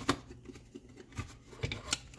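A Café Bustelo coffee can being opened by hand: a few light clicks and rustles as the plastic lid comes off and the foil seal starts to peel back.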